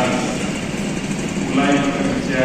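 A man's voice through a microphone and loudspeakers. He pauses for about a second, then speaks again near the end, over a steady low background rumble.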